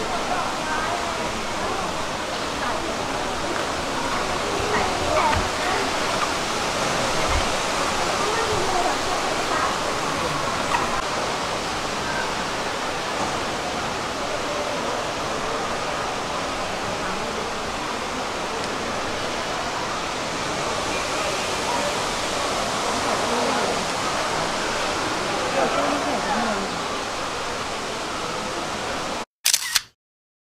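Steady rushing of a large indoor waterfall, with the chatter of a crowd of visitors mixed in. The sound cuts off abruptly just before the end.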